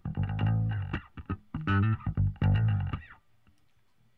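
Electric bass guitar track playing a phrase of notes through a Soundtoys Sie-Q EQ plugin, with its mid band boosted at a higher frequency, which brings out more string noise. The bass stops about three seconds in.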